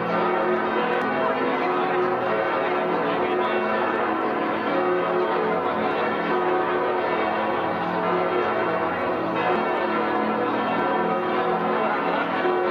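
Church bells pealing continuously, several bells at different pitches ringing over one another.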